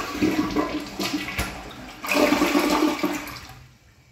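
A 2022 Glacier Bay dual-flush toilet flushing: water rushes into and swirls down the bowl. It starts suddenly, surges again about two seconds in, then fades out near the end.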